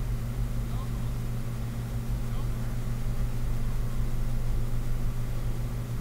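A steady low rumble that holds even throughout, with faint voices under it.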